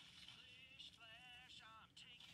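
Near silence, with a faint wavering singing voice in the second half.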